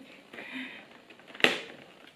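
A single sharp tap of fingers on a cardboard advent calendar's door panel about one and a half seconds in, after a faint soft murmur.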